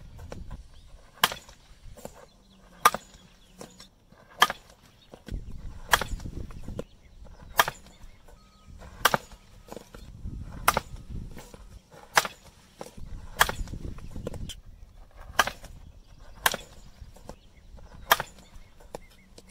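Softball bat hitting softballs into a practice net, a sharp crack about a dozen times, roughly every one and a half seconds.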